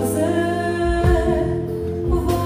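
Live band music: a woman singing held notes into a microphone, backed by guitar and drums.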